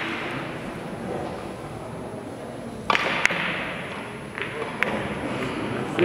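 A carom billiards shot: sharp clicks of cue and ivory-hard balls striking, two close together about three seconds in, then two more single clicks over the next two seconds, against faint background chatter in a large hall.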